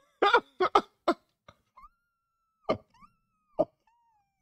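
A man laughing hard: several quick bursts of laughter in the first second, then a thin, high-pitched wheeze held through the middle, broken by a couple of sharp gasps.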